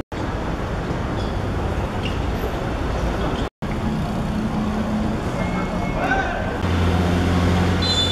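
Outdoor ambience with distant voices and steady road-traffic noise; from about two-thirds of the way in a low, steady engine hum rises above it. The sound drops out for an instant twice.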